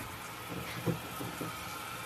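Chef's knife cutting the rind off a pineapple on a wooden cutting board, heard faintly as a few soft cuts and light knocks.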